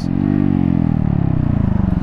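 Honda Grom's 125 cc single-cylinder engine heard from the rider's seat, its pitch rising briefly and then falling steadily as the bike slows. A haze of wind noise lies under it.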